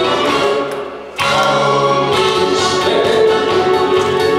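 A man singing into a microphone over a recorded backing track, amplified through a PA. The music thins out and dips about a second in, then comes back in fully.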